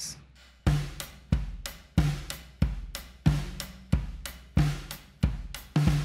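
Acoustic drum kit, recorded with only a kick mic and two overheads, playing a steady groove. Kick and snare hits alternate about every two-thirds of a second with lighter cymbal or hi-hat strokes between. It is played back through an added drum-room reverb with a little chorus.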